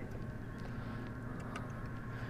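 A small motor running steadily at low level, a constant hum with a few held tones.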